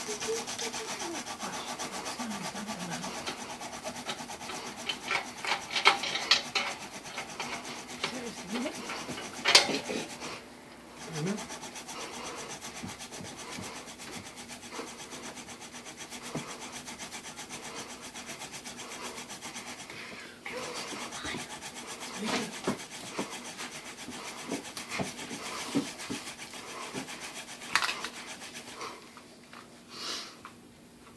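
Mouth-drill friction fire-making: a wooden spindle, steadied from above by a piece held in the mouth and spun back and forth between the palms, grinds into a wooden hearth board in a continuous rubbing rasp, pausing briefly twice. The spindle has broken through the glazed, compressed surface of the board and is biting into the wood.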